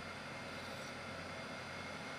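Metal lathe running steadily at speed, a faint even hum and hiss.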